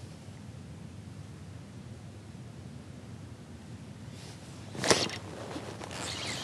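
Quiet outdoor ambience with a low steady rumble. About five seconds in there is one brief, loud rush of noise.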